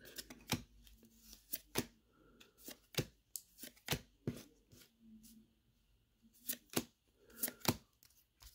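A stack of Topps baseball cards being flipped through by hand, each card sliding off the stack with a short snap or flick. The snaps come at irregular intervals, about two a second, with a pause of about a second after the middle.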